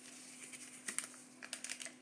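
A few faint, irregular light clicks and taps, scattered mostly through the second half, over a faint steady hum.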